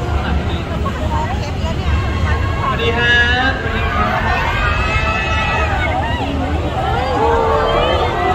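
Crowd of fans talking and calling out over one another, with several higher voices rising and falling in the middle, over a steady low rumble.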